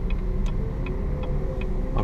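Steady low engine and road rumble inside a moving Chevrolet Camaro's cabin, with the turn-signal indicator ticking about two to three times a second.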